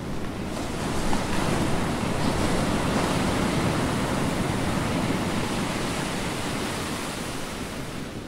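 Ocean surf: a steady, even wash of waves on a shore, rising slightly in the first second.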